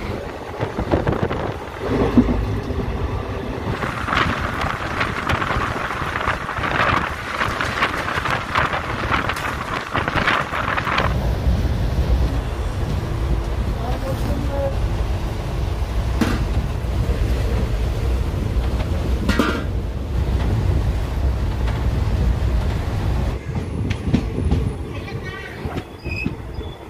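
Passenger train running, heard from inside the coach of the 13147 Uttar Banga Express: a brighter rattling noise for the first ten seconds or so, giving way about eleven seconds in to a steady low rumble, with a few sharp clicks.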